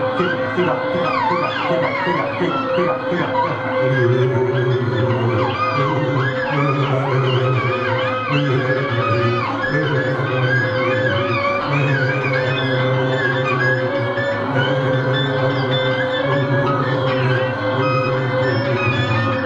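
A live experimental rock band plays an instrumental passage. A droning tone is held throughout, and a low bass note repeats in long even blocks from about four seconds in. Many high, warbling pitches slide up and down over it.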